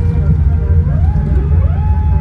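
Loud, steady low rumble in the cabin of a Boeing 787-9 rolling out on the runway after touchdown, with a whine that rises in pitch twice, about halfway through and again near the end, then holds steady as the wing spoilers stow.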